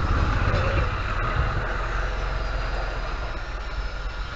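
Steady low engine rumble of road traffic with a hiss over it, easing a little after the first second. A single sharp click comes about a second in.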